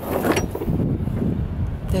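Wind buffeting the microphone: a loud, irregular low rumble, with a brief click about a quarter second in.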